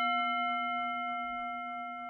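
A single struck bell ringing on with several clear tones, fading slowly.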